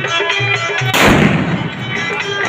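Indian dance music with tabla, broken about a second in by one loud firecracker bang that dies away over about half a second.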